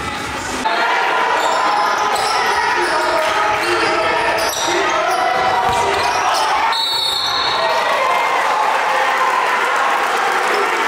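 Live gymnasium sound of a basketball game: a basketball bouncing on the hardwood under a steady din of crowd and player voices in a large echoing hall.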